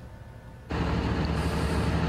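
Quiet room tone, then less than a second in the sound cuts sharply to a steady low engine rumble with a light hiss over it: a utility line truck's engine idling.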